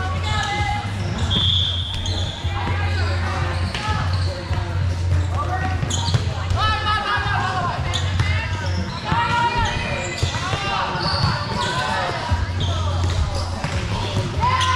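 Indoor volleyball match in a gym hall: girls' voices calling and shouting across the court, with the short thuds of volleyballs being hit and bouncing. A low hum comes and goes underneath.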